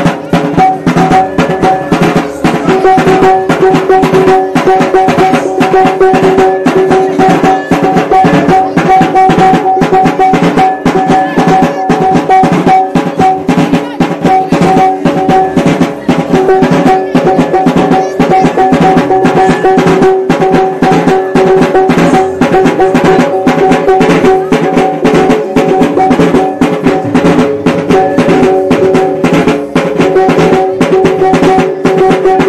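Maguindanaon tambul wedding drumming: a large double-headed drum beaten with sticks in a rapid, unbroken rhythm, with a hand-held gong struck along with it, its ringing tone held steady under the drum strokes.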